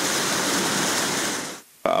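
Water rushing and churning through a concrete channel: a steady, loud rush that fades away about a second and a half in.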